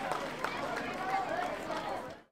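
A parade commander shouting a drawn-out word of command, his voice rising and falling, over the hubbub of a large stadium crowd.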